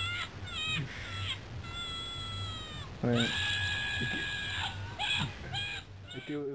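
A mobile phone's small speaker playing recorded animal calls: a few short high squawks, a long held call that falls off at its end, then a louder long held call, then more short squawks near the end.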